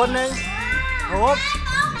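Children talking and calling out, with background music playing underneath.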